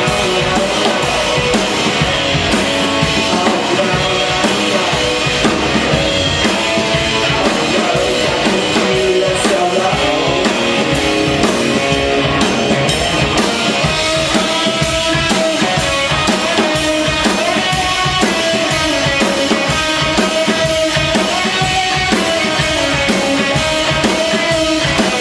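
Live rock band playing: electric guitar over a full drum kit, with steady drum strikes and cymbals.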